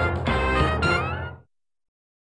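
Short closing-logo music jingle, a quick run of notes over a low bass, that cuts off suddenly about one and a half seconds in.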